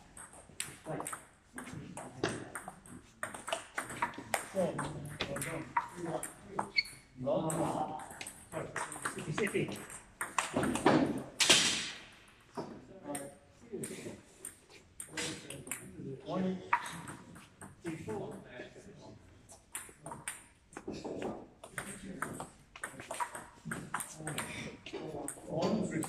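Table tennis ball hit back and forth in rallies: quick, irregular sharp clicks of the ball off the bats and the table top, with voices talking in the background.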